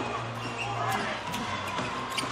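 A basketball being dribbled on a hardwood court, bouncing about twice a second over the murmur of an arena crowd.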